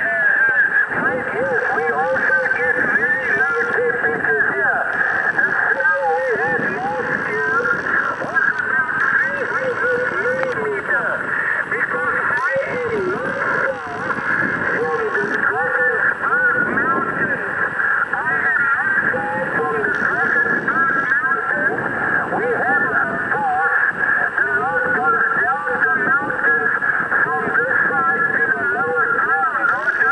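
A distant station's voice received over the radio and heard from the Kenwood HF transceiver's speaker: continuous speech, thin and narrow-sounding with the highs cut off, over a steady band hiss.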